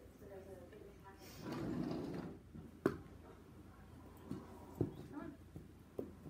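A small dog playing with a tennis ball at a tennis ball can on carpet: a noisy rush about a second and a half in, then two sharp knocks, about three and five seconds in.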